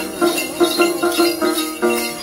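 Đàn tính, the Tày long-necked gourd lute, plucked in a quick steady rhythm of about three notes a second, with small bells jingling in time with it, as in a Then ritual accompaniment.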